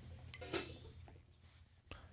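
Faint handling noise of wooden drumsticks being picked up off a snare drum: a soft rustle about half a second in and a light click near the end, with no drums struck.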